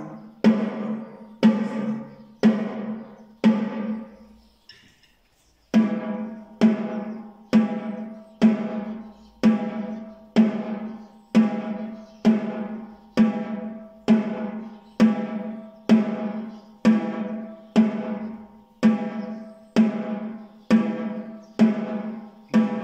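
Snare drum struck with wooden drumsticks in slow, even single strokes about one a second, alternating left and right hands in a beginner's wrist-stroke exercise; each hit rings out before the next. The strokes pause briefly about four seconds in, then resume at the same steady pace.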